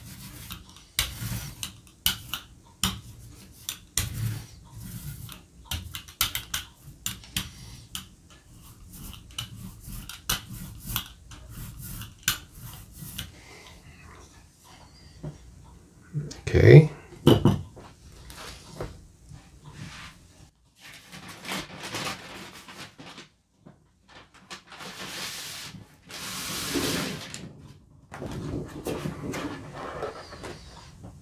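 A small hand tool clicking and scraping over a gel printing plate as thick titanium white acrylic is spread thin and even. About sixteen seconds in there is a brief, loud vocal sound that rises in pitch. Near the end a large sheet of paper rustles as it is handled.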